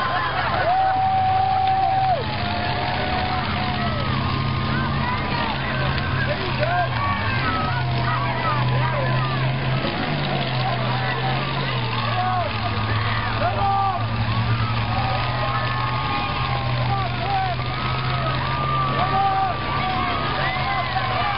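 Demolition derby car engines running with a steady low drone while the cars push against one another, under many voices calling and shouting from the crowd.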